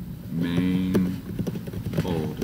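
A man's voice held on one steady pitch for about half a second, drawing out a word, followed by a few computer keyboard keystrokes.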